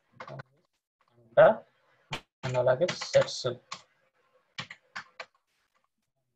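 Computer keyboard keys pressed while typing a short entry: a few clicks just after the start, then three separate key taps near the end.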